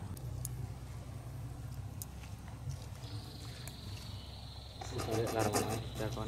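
A few faint scissor snips as hair is cut, over a low steady rumble. About halfway through, a high steady insect drone sets in, and near the end a man's voice sounds briefly.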